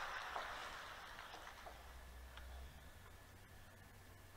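Faint arena crowd noise with scattered clapping, dying away.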